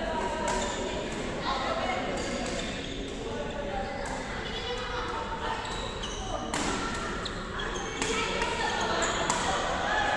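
Badminton rally: rackets striking the shuttlecock in sharp, echoing clicks at irregular intervals, over a hall full of voices.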